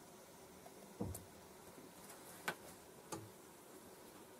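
A resistor's thin wire lead being snipped short: three small, sharp clicks about one, two and a half, and three seconds in, over quiet room tone.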